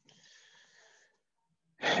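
A faint breath into a headset microphone for about a second, followed near the end by the start of a man's spoken word.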